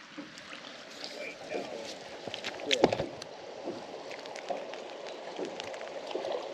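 River current moving and lapping around a drift boat, with scattered small clicks and one sharper knock about three seconds in.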